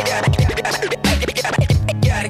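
Hip-hop beat with turntable scratching: short back-and-forth record scratches cut over the drums.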